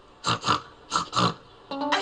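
A cartoon character's voice imitating a creature's snorting: four short snorts in two pairs. Plucked guitar notes start near the end.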